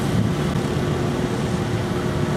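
Steady road-traffic noise, with vehicle engines running and a faint steady hum.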